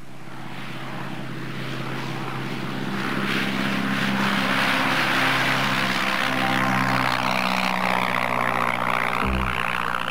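Propeller and piston engine of a vintage single-engine high-wing cabin monoplane flying low past, a steady drone that grows louder over the first four seconds and then holds as the plane passes close.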